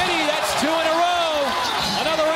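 A man's voice, most likely the play-by-play commentator, holding one long drawn-out exclamation for about a second that rises and then falls in pitch, right after calling a foul.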